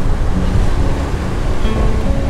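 Strong wind rushing and buffeting over the microphone from the open door of a moving passenger train, with the train's low running rumble underneath.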